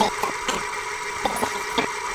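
Steady mechanical whirring hum with a few faint clicks, a video-tape fast-forward sound effect laid over the edit.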